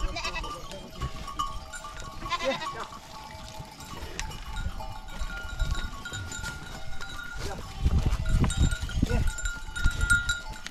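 Herd of goats bleating as they crowd together, with a wavering bleat about two and a half seconds in and a run of dull low thumps near the end.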